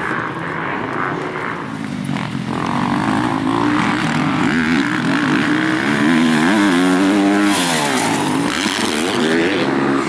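Motocross bike engines, including a Yamaha YZ250F four-stroke, revving on the track. They get louder about three seconds in, and the pitch rises and falls several times through the middle as the throttle is worked through a corner.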